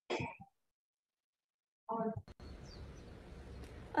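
Two short vocal sounds about two seconds apart, separated by silence, then a faint steady hiss from an open video-call microphone coming in about halfway through.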